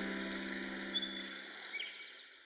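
The last piano chord dying away over a forest ambience bed: a steady hiss with a few short bird chirps, one about a second in and a couple near the end.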